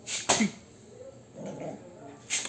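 Half Chow Chow, half Aspin puppy giving one sharp yip that falls steeply in pitch just after the start, then a softer, lower sound about one and a half seconds in.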